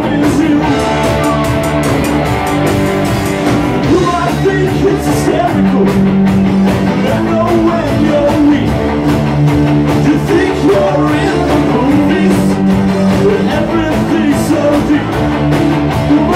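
A live rock band playing loudly: electric guitars, bass and drums, with singing.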